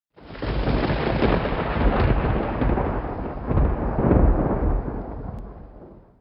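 A deep rumbling noise with no clear pitch, swelling a few times and fading out near the end.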